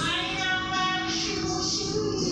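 A children's song playing: a high, child-like singing voice with a long held note near the middle, over a musical backing.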